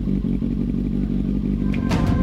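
2014 Kawasaki Z800's inline-four engine idling steadily through a Lextek RP1 aftermarket silencer. Music with drum hits comes in near the end.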